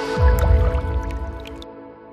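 Logo sting sound design: a sustained synth chord with liquid drip and splash effects, and a deep low boom about a quarter second in, all fading away by the end.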